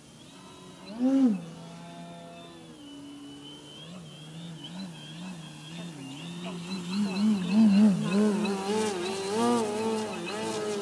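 Motor and propeller of a Skywing 55-inch Edge 540T radio-controlled 3D aerobatic plane: a buzzing tone that swoops up briefly about a second in, then wavers up and down with the throttle. It grows louder over the last few seconds as the plane comes in low and hangs nose-up in a hover.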